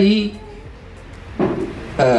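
A man speaking Malayalam into a microphone, with a pause of about a second in the middle before he carries on.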